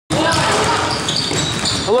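Basketballs bouncing on a gym's hardwood floor during a youth drill.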